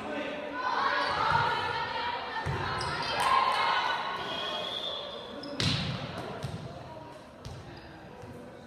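Volleyball impacts echoing in a gymnasium during a rally: a few sharp hits, the loudest a little over halfway through, with players and spectators calling out over them.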